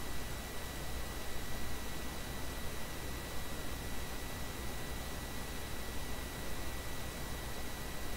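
Steady hiss with a thin, faint high whine and a low hum underneath: background noise of an open microphone, with no other sound.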